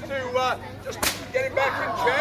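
A whip cracked once, a single sharp crack about halfway through.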